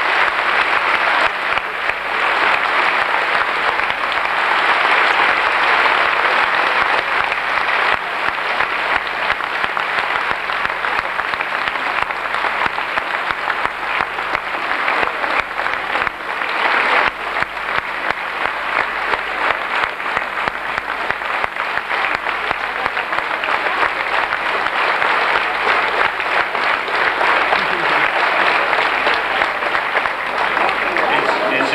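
An audience applauding at length with dense, steady clapping that swells again about halfway through and eases toward the end.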